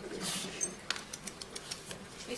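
Low background murmur of voices in a meeting hall, with a soft rustle early on and a few light clicks.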